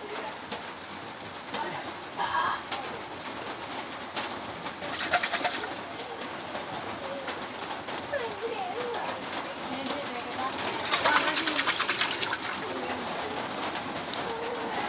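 A hand squelching and sloshing through buttermilk in a clay pot while scooping out hand-churned butter, with two brief wet bursts, about five seconds in and again around eleven seconds. Birds cooing in the background.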